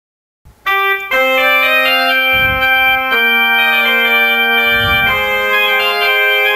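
Korg Triton LE 76 synthesizer playing its 'Church Pipes' pipe organ preset: held chords that start about a second in and change every two seconds or so. A pipe organ voice with a somewhat dark tone.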